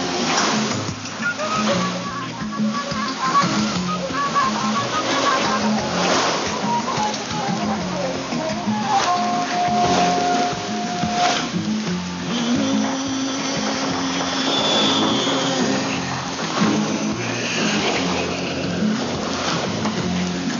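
Music broadcast by Radio Guinea, received on shortwave 9650 kHz with an AM receiver, and heard under a steady hiss of radio noise.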